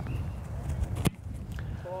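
A football kicker's foot striking the ball on a kickoff: one sharp, loud thump about a second in.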